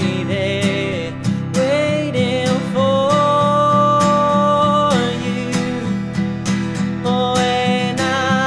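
Acoustic guitar strummed steadily under a man's singing voice, which holds one long note from about three to five seconds in.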